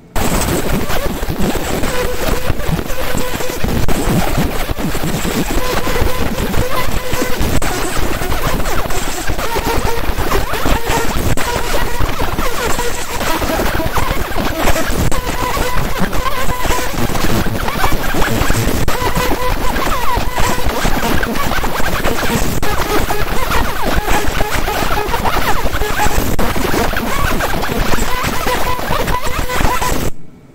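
50 W JPT fiber laser beam engraving fired clay: a loud, dense crackle of rapid popping as the surface is ablated, starting abruptly and cutting off at the end, with faint steady tones underneath.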